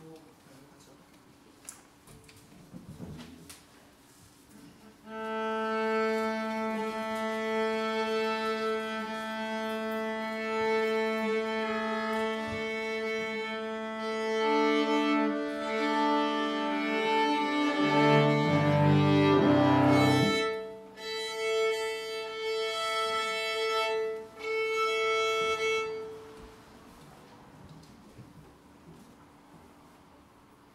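String quartet tuning: violins, viola and cello bowing long held notes against one steady pitch, with the cello's low strings sounding briefly near the middle. It starts about five seconds in, breaks off twice near the end, and stops just before the end.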